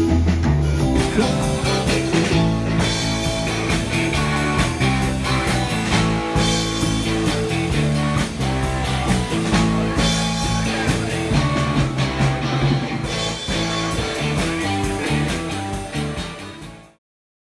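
Live blues-rock band playing: electric guitar over a drum kit keeping a steady beat. The music starts to fade out near the end.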